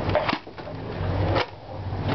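Two short plastic knocks from a Nerf toy blaster being handled: one just after the start and one about a second and a half in.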